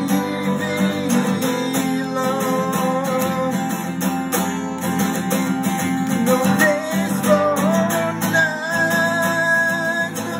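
Takamine acoustic-electric guitar strummed steadily, with a man singing over it.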